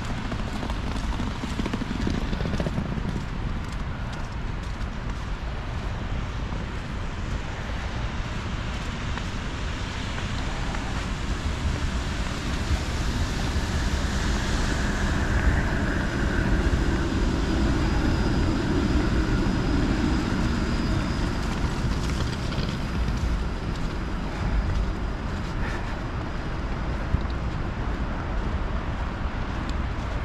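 Steady wind rumble on the microphone over city traffic noise, with a streetcar passing in the middle, swelling for several seconds with a faint high whine before fading.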